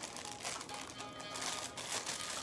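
A clear plastic jewelry bag crinkling in irregular little rustles as it is handled, over quiet background music.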